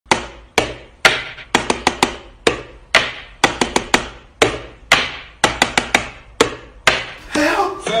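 Wall light switch clicked over and over in a repeating rhythm: a few evenly spaced clicks, then a quick run of three or four, each click ringing briefly. Near the end a tune starts.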